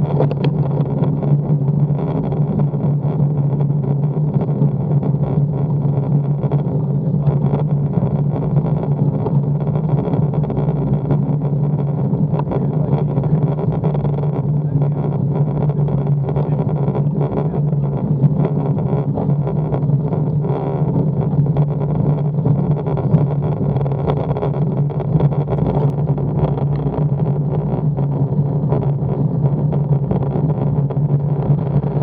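Steady road and wind noise picked up by a bike-mounted action camera while riding slowly uphill, carrying a constant low hum.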